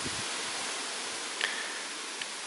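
Steady hiss of background noise, with a brief faint chirp about one and a half seconds in.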